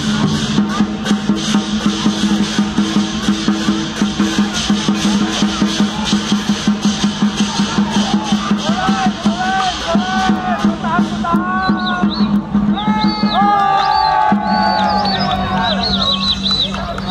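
Dragon-dance percussion band playing fast, dense drum and cymbal beats over a steady low tone. About three-quarters of the way through the cymbal beats stop and high, swooping pitched sounds take over.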